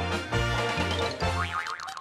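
Playful background music with a plucked bass line. In the second half the bass drops out and a rising, wobbling sound effect plays over it.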